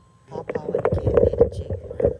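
Handling noise on a phone's microphone as the phone is picked up and swung around: a sudden burst of close rubbing and knocking with a low rumble, starting about a third of a second in.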